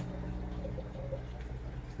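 Steady low electrical hum of running aquarium equipment, with a single sharp click right at the start.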